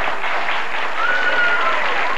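Studio audience applauding steadily, with one held high call from someone in the crowd about a second in.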